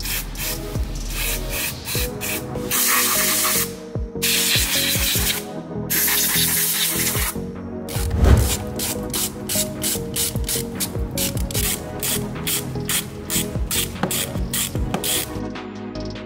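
An aerosol all-purpose cleaning spray hisses in three bursts, about three to seven seconds in, over background music with a steady beat.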